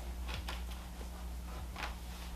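Faint handling noise: two brief rustles as hands press and rub on a full-face motorcycle helmet around its chin bar and cheek pads, over a steady low hum.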